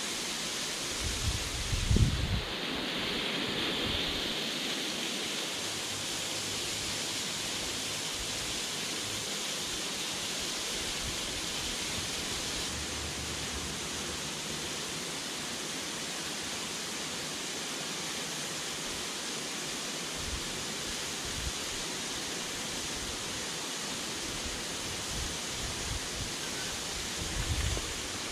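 Steady rush of a small drainage-outfall waterfall spilling onto rocks into a shallow river. A few low thumps come about two seconds in.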